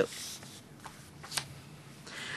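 Soft rustle of papers being handled, with two faint light clicks about a second in.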